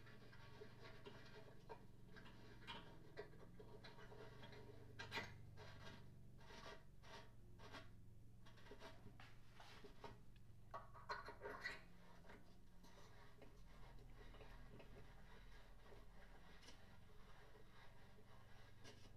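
Near silence with faint, scattered clicks and scrapes of small steel parts being handled and fitted, a cluster about five seconds in and another about eleven seconds in, over a low steady hum.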